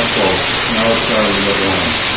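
Espresso machine steam wand, locked open, blowing a loud steady hiss of dry steam. The clean jets show that the tip holes are free and not clogged.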